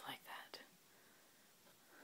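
Near silence: room tone, after a softly spoken word at the start and a faint click about half a second in.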